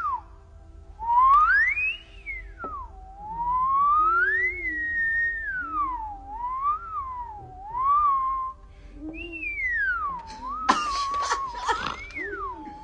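A man whistling a single wavering tone that swoops slowly up and down in pitch, like a science-fiction theremin. Near the end comes a short burst of scratchy rubbing noise.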